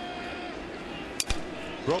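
A wooden bat breaking as it meets a pitched baseball: one sharp crack a little past halfway, over a steady ballpark crowd murmur.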